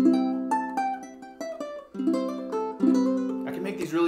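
Ukulele played in its standard C6 tuning: a strummed chord rings out, a run of single picked notes follows, then two more strummed chords, noodling around a C chord made by fretting the first string.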